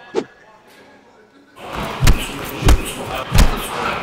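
Heavy blows landing on a body: three strong thuds about two seconds in, roughly two-thirds of a second apart, over a rushing background noise.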